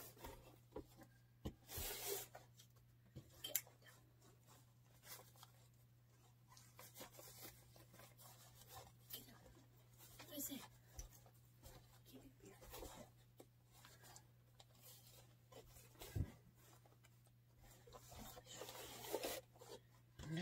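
Faint rustling and crinkling of wired fabric ribbon being folded and pressed onto a wooden bow maker, with a few soft knocks, over a low steady hum.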